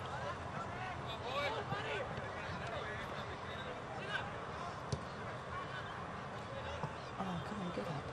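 Distant shouts and calls of footballers and spectators across the oval, short overlapping cries throughout, with a single sharp knock about five seconds in.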